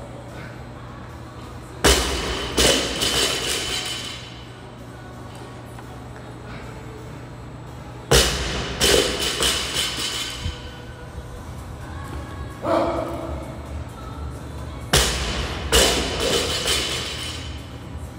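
155-lb barbell dropped from overhead onto rubber gym flooring three times, about six seconds apart: each drop lands with a heavy thud, bounces once with a second hit and rattles briefly as the plates settle.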